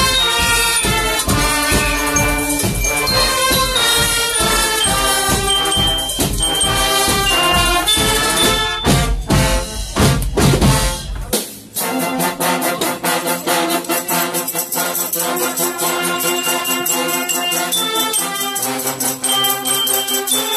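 A Guggenmusik carnival band plays loudly: trumpets, trombones and sousaphone over a steady big bass drum beat. About nine seconds in, a loud rumbling noise sweeps over the music for a couple of seconds. After that the band carries on, thinner, without the deep drum and bass notes.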